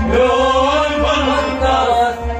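A Kashmiri Sufi song: a voice chanting a melodic line with gliding, held notes over harmonium accompaniment.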